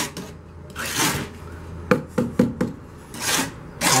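Steel mason's trowel scraping cement glue against a ceramic building block in short rasping strokes, with a quick run of several strokes about two seconds in.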